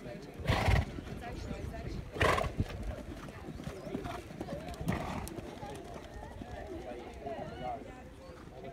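Pony cantering and jumping on a sand arena: soft hoofbeats, with three loud rushing bursts about half a second, two and five seconds in. Faint voices chatter in the background.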